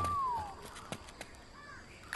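A single high whistle-like tone, held briefly and then sliding down in pitch, fading out within the first half-second. It is followed by quiet with a couple of faint clicks.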